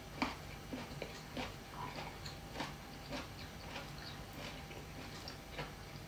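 A person chewing a mouthful of food with the mouth closed: faint, irregular wet clicks and smacks, a couple a second.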